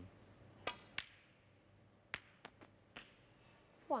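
Snooker cue striking the cue ball, then a sharper click about a second in as the cue ball hits a red. About a second later come several quicker ball clicks and knocks as the red is potted.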